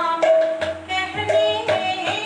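A woman singing a Krishna naam devotional song in long held notes that slide between pitches. A hand-played barrel drum accompanies her with several sharp strokes and a deep booming stroke in the middle.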